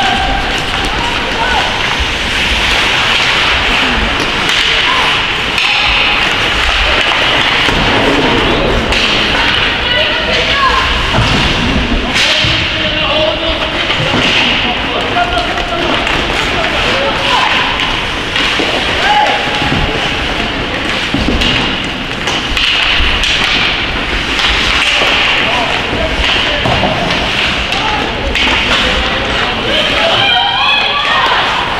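Ice hockey game in play in an indoor rink: skates scraping on the ice, with frequent knocks and thuds of sticks, puck and bodies against the boards, and voices calling out now and then.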